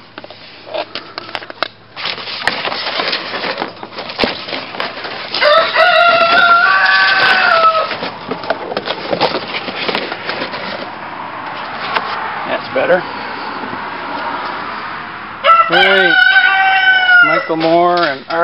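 A rooster crowing twice: each crow is about two seconds long, about five seconds in and again near the end. Between the crows there is rustling and knocking as the cover over the rabbit hutch is handled.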